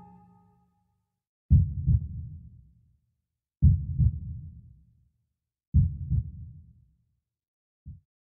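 Background music: deep drum beats in heartbeat-like pairs, three times about two seconds apart, each pair fading out over about a second, with a short fourth beat near the end.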